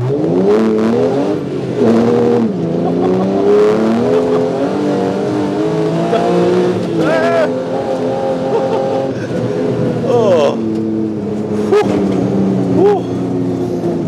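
Car driven hard on studded tyres over an ice track, heard from inside the cabin. Its drive note rises and drops back again and again as it accelerates and slows through the corners. There is a laugh about two and a half seconds in.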